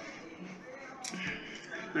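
Faint voice sounds from a man in a quiet room: a soft breath and two short low hums, with a spoken word starting at the very end.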